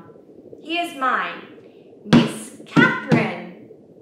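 Hand drum struck three times with the hands, a little past halfway through and twice more in quick succession, each hit with a low thump, alongside a woman's voice in short phrases.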